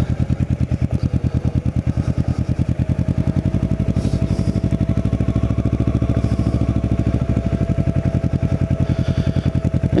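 Kawasaki Ninja 650R's parallel-twin engine running at low revs with a steady, even pulsing beat as the bike rolls slowly. A faint steady whine joins from about three seconds in.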